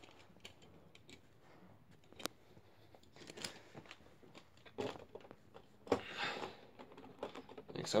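Light clicks and rattles of small toy monster trucks and a plastic track being handled, with a few louder scraping rustles about three, five and six seconds in.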